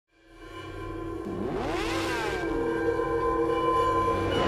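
Intro sting for a logo animation: a held, droning chord fades in, and about a second and a half in a whooshing sweep rises and then falls.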